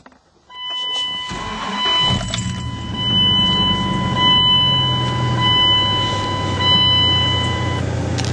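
Dodge Ram 2500's 8.0-litre Magnum V10 starting up about a second in and settling into a steady idle, heard from inside the cab. A steady high dashboard warning chime sounds alongside it and stops shortly before the end.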